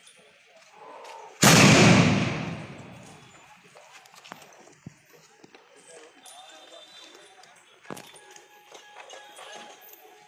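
A loud blast from an old spoked-wheel field cannon about a second and a half in, dying away over the next two seconds.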